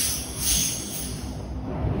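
Air hissing briefly as the atomizing-air pressure regulator on a paint pressure pot is turned down, fading within about half a second, then a steady low background hum.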